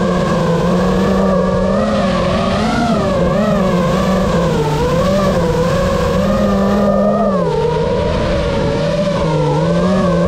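FPV quadcopter motors and propellers whining continuously, the pitch wavering up and down as the throttle changes, over the rush of propeller wash.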